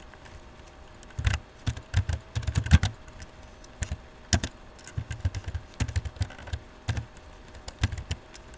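Laptop keyboard typing: irregular runs of key clicks with short pauses between them, the densest run about a second in and another in the middle.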